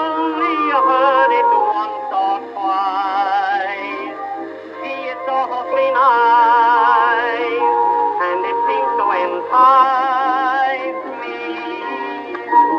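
Instrumental break in a 1913 acoustic-era song recording: the accompanying instruments carry the tune with strong vibrato. The sound is thin, with no deep bass and no bright top, typical of an early acoustic recording.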